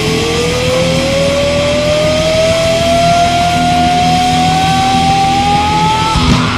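Distorted electric guitar holding one sustained note that rises slowly and steadily in pitch for about six seconds, over a dense steady wash of live-band and hall noise.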